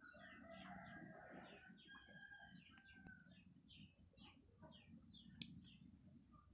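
Faint chirping of small birds: many short, quickly falling chirps repeating throughout, with a few brief held whistles in the first few seconds. A single sharp click about five and a half seconds in.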